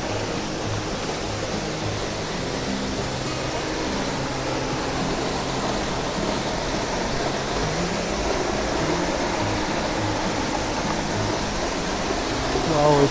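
Steady rush of a tall waterfall, with music of slow, held low notes running underneath.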